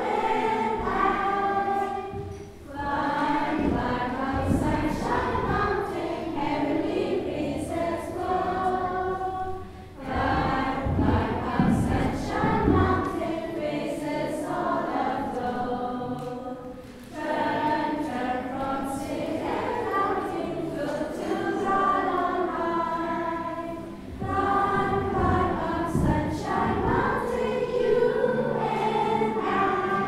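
Children's choir singing together in phrases, with short pauses for breath about every seven seconds.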